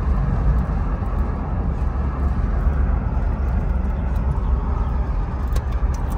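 Steady low rumble of a car driving, heard from inside the cabin: engine and road noise.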